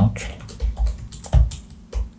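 Typing on a computer keyboard: a run of irregular key clicks, one louder about two-thirds of the way through.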